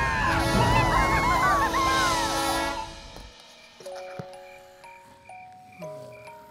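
Cartoon rocket blast-off: a loud low rumbling roar under a chorus of high gliding whoops, which cuts off suddenly about three seconds in. It gives way to quiet music with a few long held notes.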